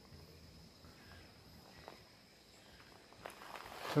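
Quiet outdoor ambience at a lakeside: a faint, steady high-pitched tone with a few soft ticks.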